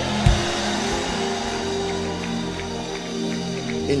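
Background music of sustained keyboard chords held steady, with a single low thump about a quarter second in.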